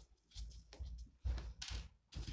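Handling noise as the rifle is worked on a wooden board: a few soft, low thumps and small clicks, the loudest about halfway through.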